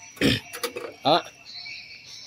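A man's voice saying a short word about a second in, after a brief low burst near the start, with a faint steady high tone underneath.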